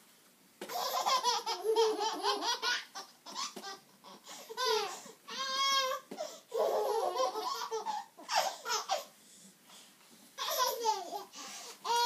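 Babies laughing and babbling in high-pitched bursts with gliding squeals, starting about half a second in and pausing briefly near the end.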